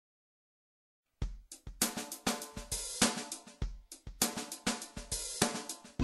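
Silent for about a second, then a drum kit starts a bossa nova groove: kick drum, snare and hi-hat in a steady rhythm, the drums-only intro of a backing track.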